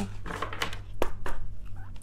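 Tarot deck being shuffled by hand: a few quick, crisp card snaps and rustles, with a steady low hum underneath.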